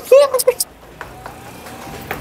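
A man's voice gives a short burst of laughing vocal sounds in the first half second, then drops to a faint room background.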